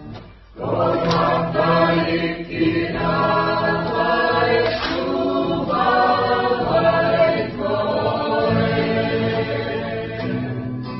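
A group of voices singing a Pacific Island action song together, in long held notes. The singing drops away briefly and comes back in about a second in.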